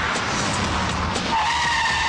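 Car tyres skidding to a stop: a loud, noisy skid that turns into a steady high squeal about two-thirds of the way through.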